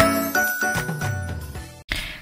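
A short tinkling musical jingle of bell-like notes that die away, cut off suddenly just before the end.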